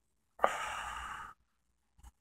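A man's sigh: one long breathy exhale of about a second, starting sharply just under half a second in.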